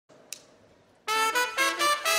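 Near silence with a faint click, then about a second in a banda's brass section opens the song with a quick run of short notes.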